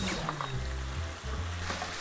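Kimchi and rice sizzling in a frying pan, under background music with sustained low notes.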